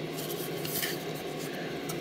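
Handling noise of a drinking horn being pushed into its strap holster: steady rubbing and scraping of the strap against the horn, with a few light clicks.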